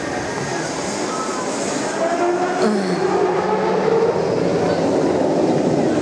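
Drop-tower ride's seat gondola coming down the tower to its base, with a loud, steady mechanical rumble.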